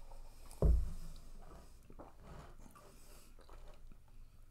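Quiet wet mouth sounds of coffee being sipped and swished around the mouth for tasting, with a sudden dull thump about half a second in.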